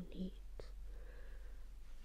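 A woman's soft, whispery voice finishing a word, then a short pause broken by a single sharp click, over a low steady hum.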